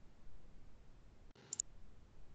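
Faint room tone, with a brief sharp double click about one and a half seconds in.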